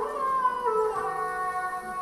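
Bowed sarangi playing a slow, unmetered melody with sliding notes. It glides down during the first second, then holds a steady note.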